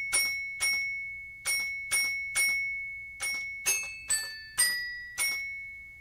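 Music: a slow melody of about ten bright, bell-like struck notes, each ringing out and fading, over a high held tone.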